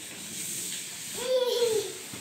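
A baby's short, high-pitched vocal sound, a drawn-out 'aah' that falls slightly in pitch, about a second in.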